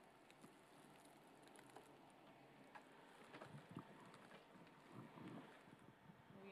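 Near silence: faint room tone with a few soft clicks and some low, muffled thumps.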